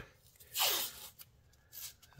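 Green masking tape pulled off the roll with a short ripping sound about half a second in, followed by two brief fainter rips near the end.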